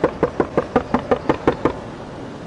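A rapid run of about ten sharp taps or knocks, roughly six a second, stopping just before two seconds in.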